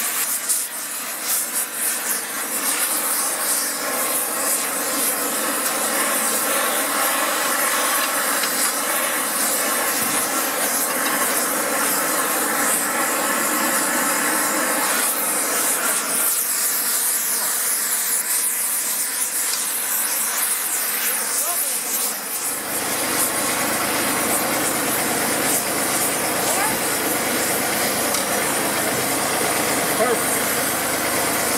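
Oxy-fuel torch flame hissing steadily as it heats the bent steel of a tractor loader arm red-hot for straightening. About three-quarters of the way through, a steady low rumble joins in underneath.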